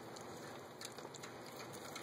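Faint chewing of baby mini pigs eating blueberries, with a few soft clicks.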